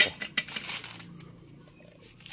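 Coconut husk being pulled apart by hand: a quick run of sharp cracks and snaps of the fibres in about the first second, then fading.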